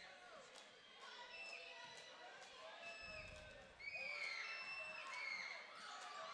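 Murmur of a gym crowd during a basketball free throw, with a few sharp ball knocks and brief high sneaker squeaks on the hardwood floor, busiest from about four seconds in as the shot goes up and players move in for the rebound.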